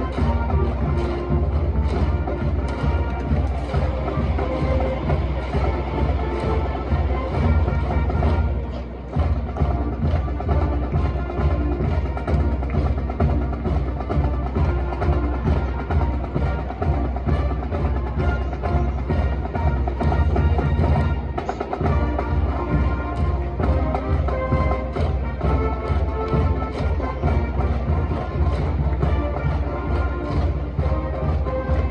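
A school cheering band in the stadium stands playing a cheer song, with pitched instruments over a steady, regular drumbeat; the music breaks off briefly about nine seconds in.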